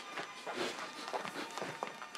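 Footsteps of two people walking across a room: a string of soft, irregular steps on the floor.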